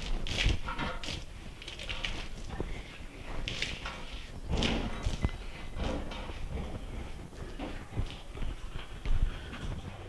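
A horse's hooves shifting on the wash-stall floor: a few irregular clops and scuffs.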